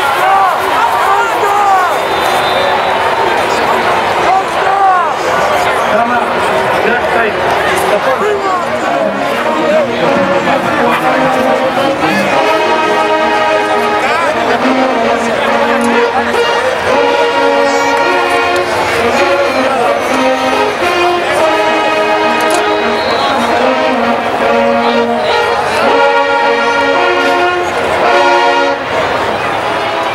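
Stadium crowd shouting, then about twelve seconds in a marching band's brass section starts playing loud held chords that move in steps.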